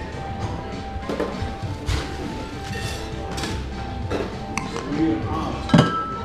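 Background music with bar tools and glassware clinking as cocktail gear is handled, and a sharp knock just before the end.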